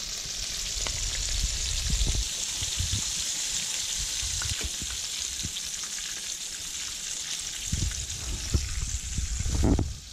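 Breaded fish fillets frying in hot oil in a skillet: a steady sizzling hiss with scattered pops, and occasional knocks as metal tongs turn and lift the pieces.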